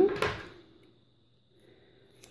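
A woman's voice trailing off, then a short rustle and near quiet with a few faint soft clicks from hands handling a glass jar and a roll of washi tape.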